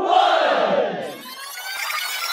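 A group of voices shouting together, the last call of a "three, two" countdown, held for about a second. Music starts as the shout fades.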